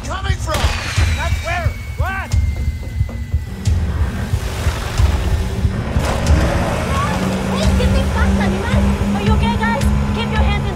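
Film soundtrack: a dramatic music score with a pulsing low beat, under shouted voices in the first two seconds and again near the end. A wash of noise fills the middle.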